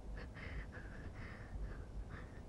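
A woman's faint, uneven breathing in short puffs, over a low rumble.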